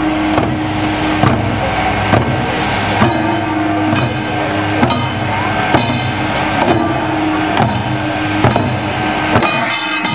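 Korean pungmul percussion, with barrel drums and small brass gongs struck together in a steady march beat about once a second, each stroke leaving a metallic ring, over a steady low rumble. Near the end the rumble drops away and the strikes come quicker and closer together.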